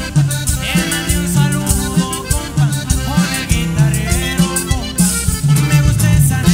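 Norteño band playing an instrumental passage between sung verses: accordion melody over electric bass, guitar and drums, in a steady bouncing rhythm.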